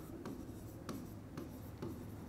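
A stylus writing on an interactive display screen: faint pen strokes with about four light taps as letters are drawn.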